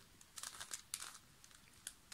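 Faint, scattered clicks and scrapes of a 3D-printed plastic Axis Megaminx puzzle being handled and its faces turned.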